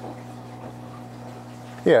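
Steady low electrical mains hum from running bench test equipment, with faint evenly spaced overtones above it.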